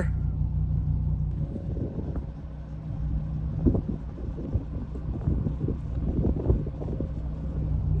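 Open-top convertible driving on a dirt road. A steady low engine and road drone runs for the first second and a half, then gives way to uneven low rumbling and wind buffeting.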